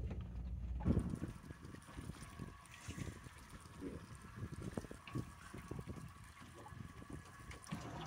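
Faint sea ambience on a drifting boat: water lapping and sloshing against the hull, with wind on the microphone. A low rumble in the first second stops suddenly.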